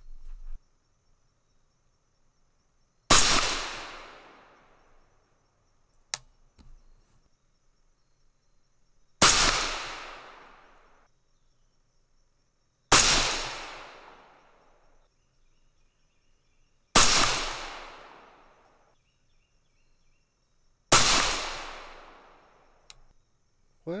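Five shots from a suppressed AR-style rifle in 6mm ARC firing 108-grain Hornady ELD-M hand loads, spaced about four to six seconds apart. Each shot is a sharp crack followed by an echo that dies away over about two seconds.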